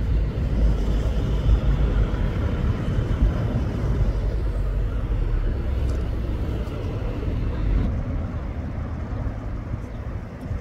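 Outdoor city ambience: a steady low rumble of road traffic.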